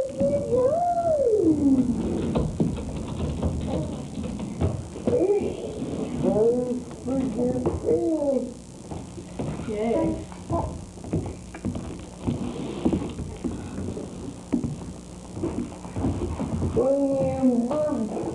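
A baby vocalizing in several bouts of high, swooping coos and squeals, with short knocks and rustles from handling in between.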